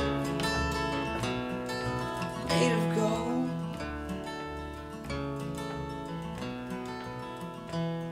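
Instrumental passage of a song played on strummed acoustic guitar with double bass, the chords ringing over sustained low bass notes.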